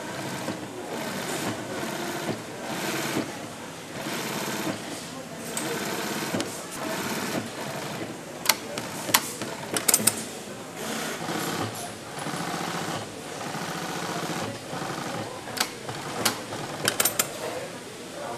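Industrial sewing machine stitching a leather upholstery panel, running in short bursts of about a second with brief pauses between them. A few sharp clicks stand out in the second half.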